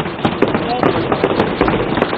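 Members of parliament thumping their desks in approval after a budget proposal: a dense, steady clatter of many hand blows on wooden desks, with voices mixed in.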